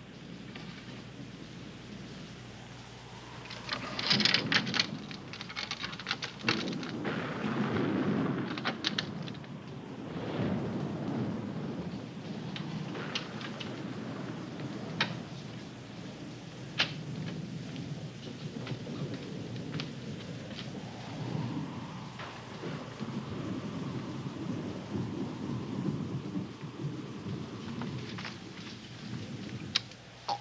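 Thunderstorm sound effect: steady rain with rolling thunder, the loudest rumbles about four seconds in and again around eight and ten seconds, with scattered sharp crackles throughout.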